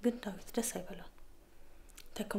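Speech only: a woman talking quietly for about the first second, then a pause.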